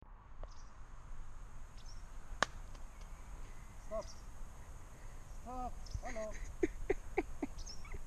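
A single sharp click of a golf iron striking the ball, a couple of seconds in, followed by a bird calling several short times.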